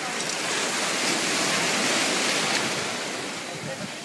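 Shallow surf washing in around a stranded shark: a rush of foaming water that swells to a peak about two seconds in and then ebbs away.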